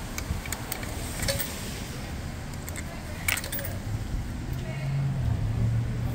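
Coins jingling and clinking into a coin-operated street parking meter: a quick run of sharp metallic clinks in the first second or so, and another clink about three seconds in.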